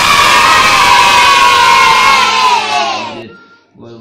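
A crowd of high-pitched voices, sounding like children, cheering together in one long held shout that falls slightly in pitch and fades out about three seconds in.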